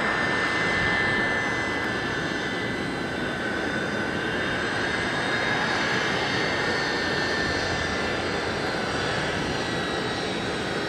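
Four Rolls-Royce Trent 500 engines of an Airbus A340-600 running at taxi power: a steady jet rush with a thin high whine over it.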